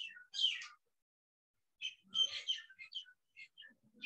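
Birds chirping: short high-pitched calls, a brief cluster at the start and a longer run of chirps from about two seconds in.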